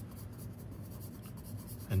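A 2B graphite pencil scratching across sketchbook paper in quick, irregular short strokes as hair is shaded in.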